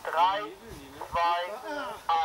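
Speech only: a voice counting down in German, "drei, zwei", with a pause between the two numbers.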